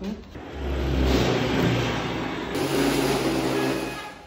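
A motor vehicle's engine running, a loud rushing noise over a low steady hum, with an abrupt change in tone about two and a half seconds in.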